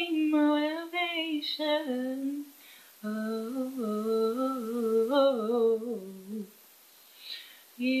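A young woman's unaccompanied voice singing a wordless, wavering melody. About three seconds in, after a short pause, she hums a lower melody for about three and a half seconds.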